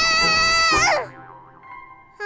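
A cartoon character's long, high-pitched scream while tumbling down a tunnel, held for about a second before sliding down in pitch and breaking off. Soft background music follows.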